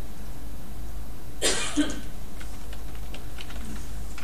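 A single loud cough about a second and a half in, followed by soft computer-keyboard keystrokes, over a steady low electrical hum.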